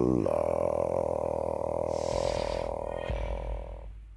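Choir holding a sustained chord over a very deep bass note, fading out toward the end.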